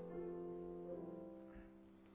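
Piano playing a hymn introduction: held chords with a few new notes, slowly fading away.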